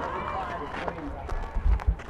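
Several voices of players and onlookers chattering on the field, with a few low thumps near the end.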